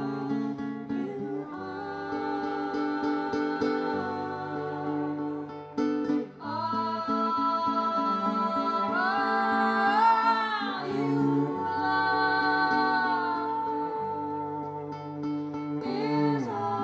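Live acoustic folk song: female voices singing in harmony over strummed acoustic guitar and bowed cello. The cello holds long low notes that change every couple of seconds, and the music thins out briefly about six seconds in.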